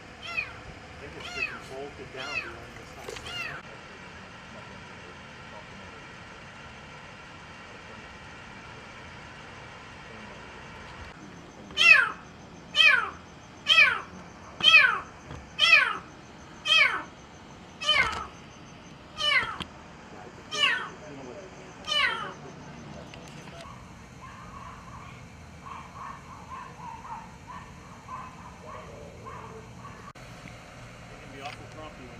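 Kitten trapped in a sewer drain, crying: a few meows at the start, a pause of several seconds, then a run of about eleven loud meows roughly one a second, each falling in pitch.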